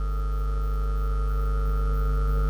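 Steady electrical hum, strongest in the deep low end, with several fixed higher tones layered over it and no change in pitch.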